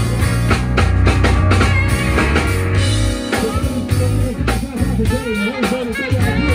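A live band playing, with drum kit, electric guitar and keyboard over a deep, steady bass line. In the second half a lead line bends up and down in pitch.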